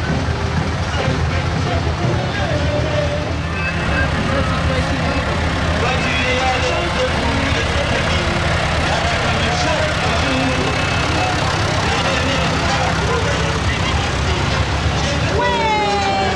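Tractor engines running steadily at low speed as they tow parade floats past, under crowd chatter. Near the end, a tone starts and falls slowly in pitch.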